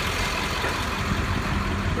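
International 4700-series tow truck's diesel engine running steadily at idle, a constant low hum.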